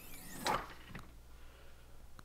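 Renogy 100 W solar panel's aluminium frame sliding along its metal slide rails, a short sliding rush with squealing glides that peaks about half a second in, followed by faint handling sounds.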